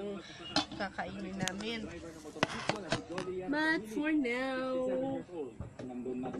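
A woman talking, with several sharp knocks or clicks in the first half.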